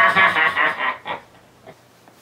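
A man's loud evil laugh that breaks off about a second in, followed by faint small knocks.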